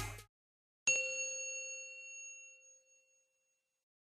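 A hip-hop track cuts off, then a single bright bell-like chime strikes about a second in and rings out over about two seconds. It is a logo ident sound effect.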